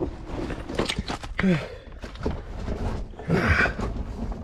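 A man grunting with effort as he squeezes and climbs up through a narrow rock opening: two short grunts that fall in pitch, the second and louder one near the end. Between them come scuffs and scrapes of clothing and feet on rock and gravel.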